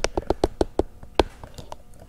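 Handling noise: a quick, uneven run of about nine light clicks and taps over nearly two seconds, the sharpest a little past a second in.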